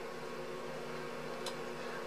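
Faint room tone: a steady low hum under a light hiss, with one small tick about one and a half seconds in.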